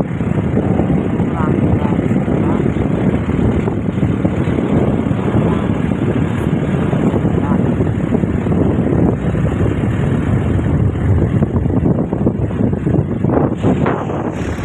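Steady rush of wind buffeting the phone's microphone over the rumble of a moving vehicle, with a few knocks near the end.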